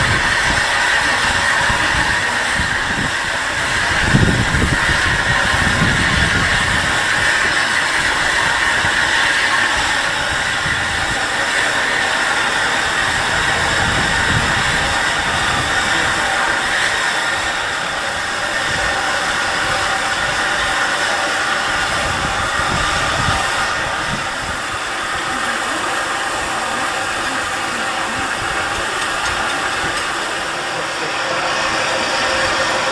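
Steady hiss of steam from the standing LMS Royal Scot class 4-6-0 steam locomotive 46115 Scots Guardsman, with irregular low rumbles underneath, the strongest about four seconds in.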